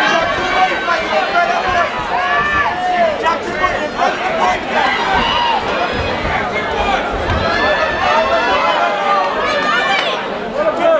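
Crowd of boxing spectators talking and calling out over one another, many voices overlapping.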